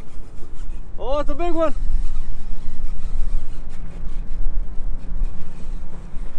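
Steady low rumble of wind buffeting the camera microphone on a kayak. About a second in comes a short, wavering voice-like hum lasting under a second.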